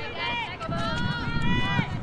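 High-pitched girls' voices shouting across a soccer field, with one long drawn-out call near the middle, over a low rumble of outdoor noise.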